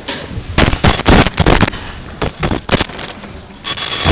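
Several people sitting down at a long table: chairs pulled out, scraped and bumped, with a run of loud irregular knocks and clatters against the table and its microphones.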